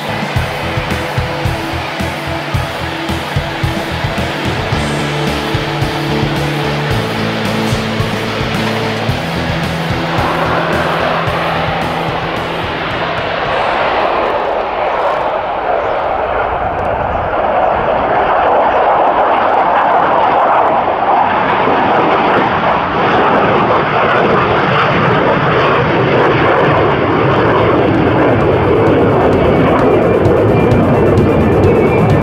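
Background music with a steady beat, then from about ten seconds in the jet engine of a single-seat F-16V fighter, a Pratt & Whitney F100 turbofan, builds into a loud, steady roar as it takes off and climbs away. The roar covers the rest.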